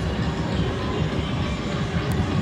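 Steady low rumble of outdoor city ambience, with music faintly behind it.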